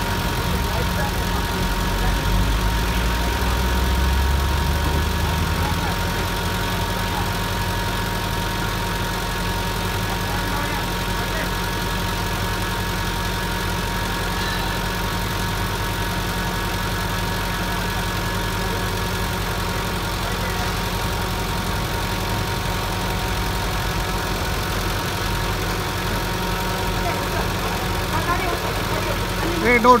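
Truck engine running steadily at idle, swelling briefly a few seconds in, with a thin steady whine above it.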